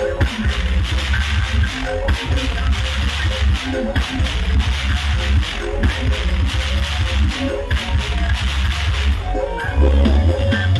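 Loud dance music with a heavy bass, played through huge truck-mounted stacks of sound-system speakers.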